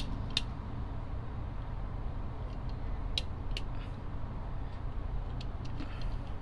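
A few light clicks and ticks of fingers handling a small die-cast metal toy car and working its opening parts, over a steady low hum.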